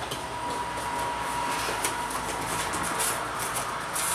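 Plastic packaging rustling and crinkling as a bagged plush toy is handled, over a steady background hiss. A faint steady whine runs through the first half.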